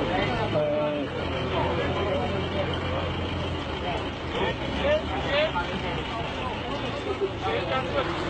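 A forklift's engine running steadily under several men's voices.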